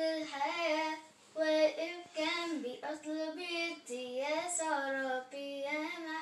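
Children singing an Arabic Christian hymn (tarnima) in sustained phrases with sliding pitch and short pauses between lines.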